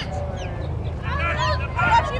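Several high-pitched voices calling and shouting in short bursts over each other, over a steady low rumble.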